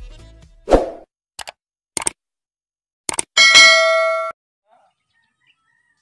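Intro sound effects: a short loud hit under a second in, a few quick clicks, then a bright ringing chime of several tones that stops abruptly after about a second.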